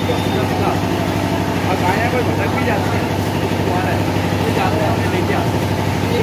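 A steady, unchanging low machine hum, like a motor or engine running, with faint voices of people talking in the background.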